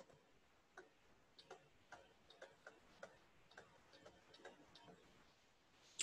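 Near silence with faint, irregularly spaced light clicks of a stylus pen tapping and writing on a tablet screen.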